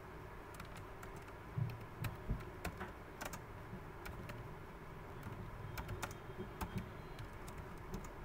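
Typing on a computer keyboard: irregular keystrokes, with a few louder ones about two seconds in.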